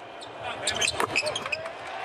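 Basketball court sounds: several sneaker squeaks on the hardwood and ball thuds in a quick cluster about half a second to a second in, over low arena background.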